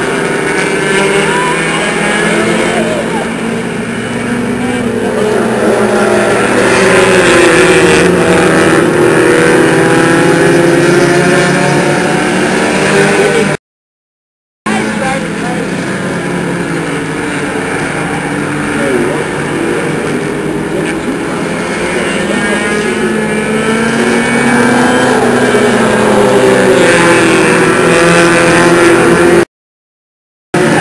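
Engines of a pack of small stock cars racing around a paved short oval, their pitch rising and falling as they accelerate and pass. The sound breaks off to silence for about a second midway, then resumes.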